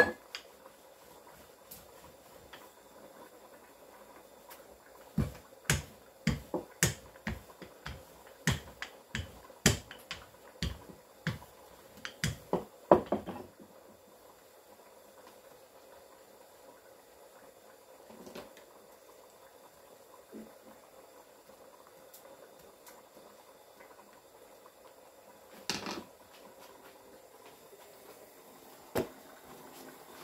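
Wooden rolling pin and hands working dough on a hard kitchen countertop, making a run of sharp irregular taps and knocks for several seconds, then a few isolated knocks.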